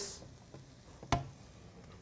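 A single light knock about a second in, a utensil tapping at the wok while chili slices are scraped in and stirred.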